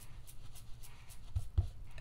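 Blending brush being rubbed in quick circles over a die-cut paper leaf: a faint, rapid scratchy rubbing on paper, several strokes a second, with two soft low thumps near the end.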